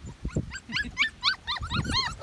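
Medium poodle puppies whimpering and yipping: a quick run of short, high-pitched cries, about five a second, starting about half a second in.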